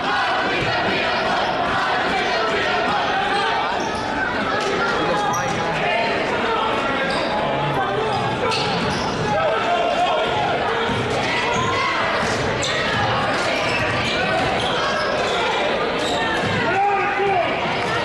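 Basketball bouncing on a hardwood gym floor as players dribble, with spectators' voices echoing in a large gym.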